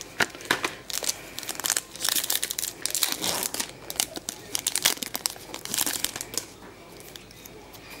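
Foil wrapper of a Pokémon trading card booster pack crinkling as it is worked open by hand: a continuous run of irregular crackles and rustles.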